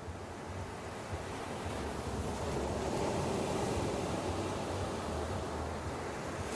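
Ocean surf breaking and washing up a sandy beach: a steady rushing wash that slowly swells louder.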